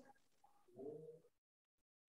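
Near silence, with one brief faint low pitched sound, a short hum or coo, about a second in.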